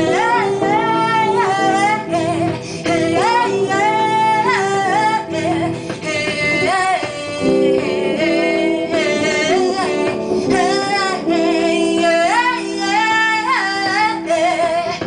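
A woman singing into a microphone over instrumental accompaniment, her sung phrases gliding up and down with short breaks between them.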